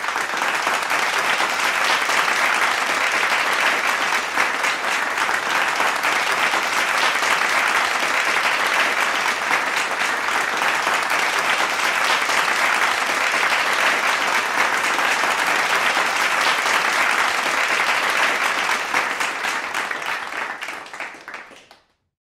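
A small audience applauding steadily, fading out over the last few seconds.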